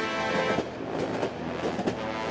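Train sound effect, its wheels clattering along the rails, coming in about half a second in over background music.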